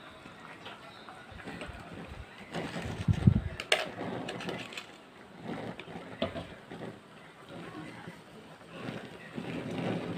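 A metal spoon scraping and tapping in plastic cups as salt and seasoning are scooped into a cooking pot. A low thump and then a sharp click come about three seconds in.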